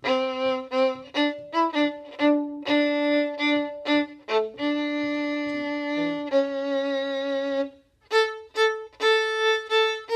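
Solo violin playing a rhythmic passage of short bowed notes, then two longer held notes about halfway through, a brief pause, and short notes again.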